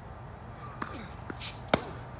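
Tennis ball struck by a racket on a forehand: one sharp, loud pop shortly before the end. It is preceded by fainter knocks of the ball being hit from the far end of the court and bouncing on the hard court.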